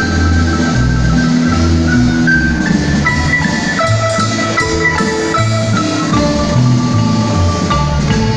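Marimba music: a quick mallet melody of struck notes over a steady bass line.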